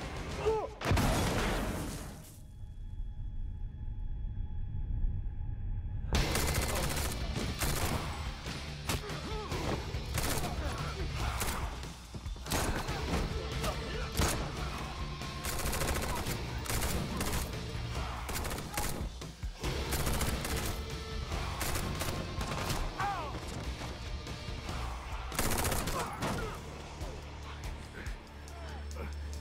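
Film gunfight: a dense fusillade of shots from handguns and automatic weapons, with action music underneath. About two seconds in, the sound goes muffled for about four seconds with a steady ringing tone. Then the rapid gunfire resumes and continues to the end.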